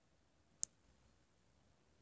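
Near silence with a single brief, sharp click a little over half a second in.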